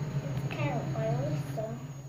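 A girl's voice talking indistinctly, over a steady low hum that stops near the end.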